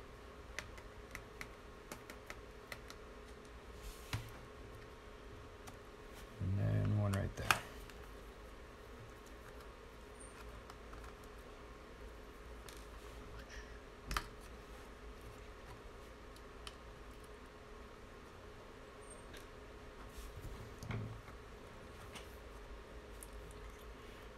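Faint clicks and taps of a small screwdriver working the hard-drive screws out of a laptop's plastic chassis. A louder sharp click comes once about seven and a half seconds in, after a short low rumble, and again near fourteen seconds.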